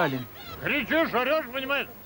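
Shrill, squawking voice of a Petrushka glove puppet, made through a swazzle (pishchik) held in the puppeteer's mouth, chattering a quick sing-song phrase that starts about half a second in.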